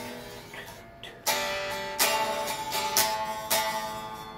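Guitar strumming closing chords with no singing: a chord fades at first, then four strums, about a second apart and the last two closer, each left to ring.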